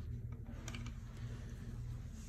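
A few faint, quick clicks as a Phillips screwdriver drives a screw into a plastic canopy rod clip and its lock nut, over a steady low hum.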